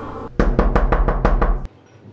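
Rapid knocking on a wooden door: about eight quick, loud knocks in a row, starting about half a second in and stopping abruptly.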